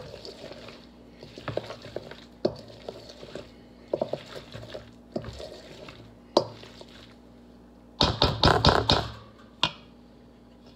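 Wooden spoon stirring egg salad in a stainless steel mixing bowl, knocking against the metal now and then. About eight seconds in comes a quick run of louder knocks and scrapes as the mixing speeds up.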